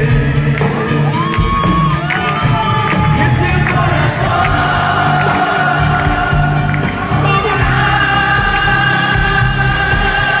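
Andean folk band playing live, with guitars and voices singing, heard through the hall's sound system, and audience shouts and cheering over the music.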